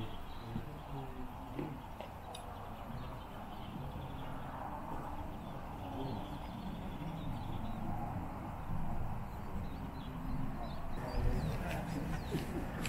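Steady outdoor background with a faint murmur of distant voices.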